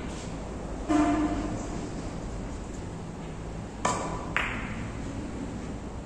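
Three-cushion carom billiards shot: the cue tip strikes the cue ball with a loud, ringing click about a second in. About three seconds later come two sharp clicks half a second apart as the balls collide.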